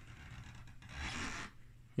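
Faint rubbing and scraping handling noise, slightly louder about a second in.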